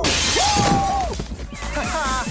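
A glass window shattering as an ice sculpture crashes through it: a crash at the start, then the hiss of breaking glass for about a second and a half. Dance music plays underneath.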